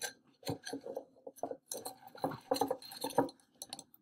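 Small holly twigs being snapped off and knocked against a wooden cup: a run of irregular small clicks and snaps.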